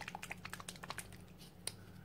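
A plastic acrylic paint bottle being handled and squeezed: a quick run of small clicks and crackles, then one sharper click a little past halfway, over a low steady hum.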